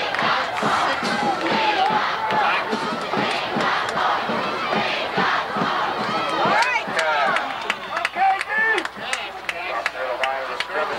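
A football crowd shouting and cheering during a play, many voices overlapping, with a few louder single shouts standing out in the second half.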